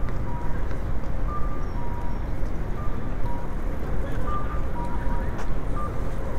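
Japanese pedestrian-crossing audio signal sounding a cuckoo-style two-note call, a higher note dropping to a lower one, repeating about every second and a half while the walk light is green, over street traffic and crowd noise.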